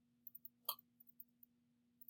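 Near silence: a faint steady low hum, with one short faint click a little under a second in.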